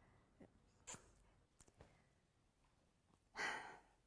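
Near silence in a pause between a woman's sentences, with a few faint mouth clicks, then one short audible in-breath about three seconds in.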